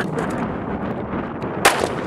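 A single shot from a Glock 17 9mm pistol about one and a half seconds in.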